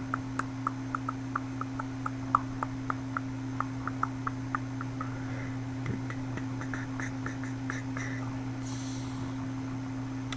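Steady low electrical hum with a run of faint, irregular ticks, about three a second, that stop a little after the eighth second.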